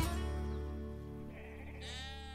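Backing music ends on a held chord that rings out and fades, then a sheep bleats near the end.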